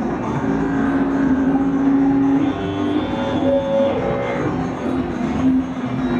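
Live electronic music from synthesizers and a Korg Electribe 2 groovebox: long held synth notes over a dense, steady backdrop, a low note sustained for about two seconds and then a higher one.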